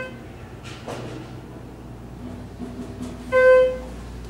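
Schindler elevator car's electronic chime sounds once, a single clear tone about half a second long, over a steady low hum.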